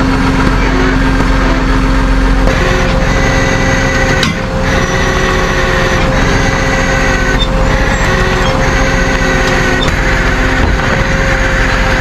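Dodge tow truck's engine running steadily, with a whine that comes and goes, and a single knock about four seconds in.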